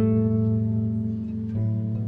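Two concert harps played together: plucked chords that ring on and overlap, with a fresh chord struck at the start and another about a second and a half in.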